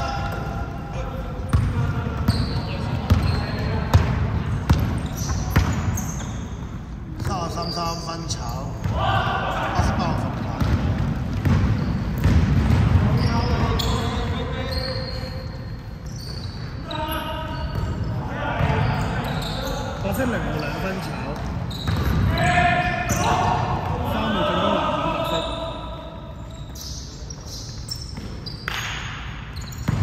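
A basketball bouncing and being dribbled on a wooden gym floor in an echoing sports hall, repeated knocks throughout. Players' voices call out over the play.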